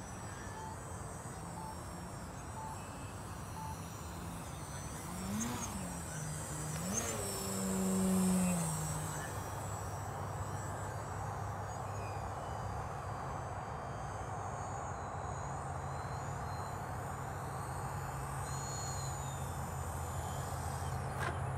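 Radio-controlled model biplane's engine in flight, its pitch rising and falling a few times with throttle changes and loudest about eight seconds in, then settling to a steady low drone at reduced throttle as the plane comes in to land.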